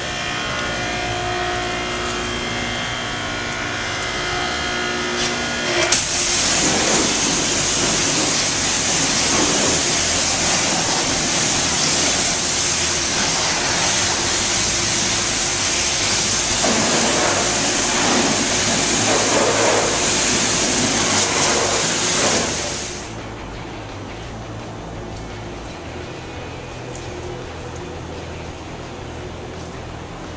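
Background music, then about six seconds in a pressure-washer spray starts: a loud, steady hiss of water hitting the car that cuts off suddenly after about 16 seconds, leaving the music quieter underneath.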